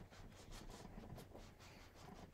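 Near silence: faint rubbing of a wood-mounted rubber stamp being pressed down onto foil cardstock.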